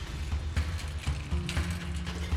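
Metal serving cart rattling and clicking as it is wheeled in, over background music with a pulsing low beat.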